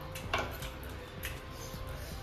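Quiet background music with a low hum, broken by a short click about a third of a second in and a fainter one a little after a second.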